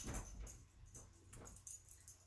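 Faint sounds of a pet dog, with a few light clicks.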